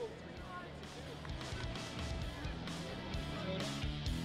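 Background music fading in, with faint voices underneath; it grows louder about two seconds in.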